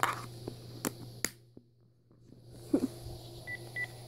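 Plastic parts of a Dyson DC25 vacuum being handled: a few sharp clicks and knocks in the first second or so, a short near-silent gap, and a thud just under three seconds in. Two short high electronic beeps follow near the end.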